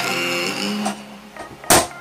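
Background music with sustained notes that fades out about a second in, then one sharp, loud blow near the end as the laptop is struck.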